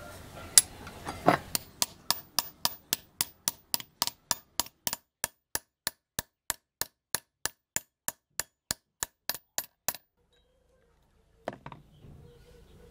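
Hammer tapping on the lure's metal blank: two harder blows in the first second and a half, then a long, even run of sharp taps at about four to five a second that stops at about ten seconds, and one more knock near the end.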